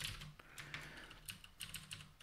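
Typing on a computer keyboard: a quick, irregular run of faint key clicks.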